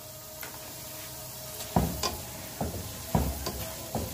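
Potatoes and spices sizzling in hot oil in a pan; from a little under two seconds in, a plastic spatula stirs them, knocking and scraping against the pan about six times.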